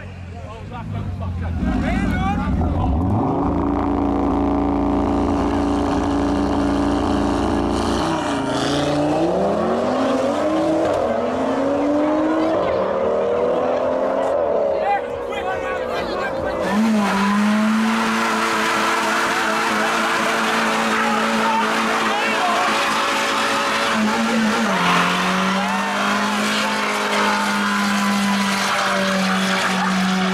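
Cars doing burnouts, engines held at high revs with the rear tyres spinning. First a BMW 1 Series, whose revs rise and fall in the middle. Then, from about halfway, another car's engine is held at a steady high rev note.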